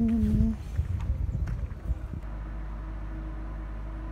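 A short hummed laugh, then irregular footsteps and handling knocks as a handheld camera is carried across pavement; about two seconds in these stop abruptly and give way to a steady low hum.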